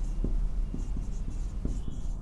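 Marker pen writing on a whiteboard: a run of short, high-pitched strokes as letters are drawn, over a low steady hum.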